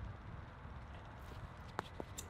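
Faint scuffs of a discus thrower's shoes turning on a concrete throwing circle during a spin, with one sharp click near the end, over a low rumble of wind on the microphone.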